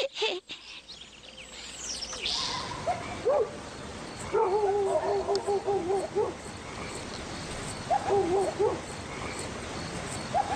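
A brief shimmering sweep about two seconds in. Then, over a steady background hiss, a wavering animal call sounds twice: a long quivering call around the middle and a shorter one near the end.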